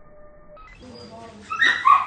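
Australian terrier giving two short, high barks near the end.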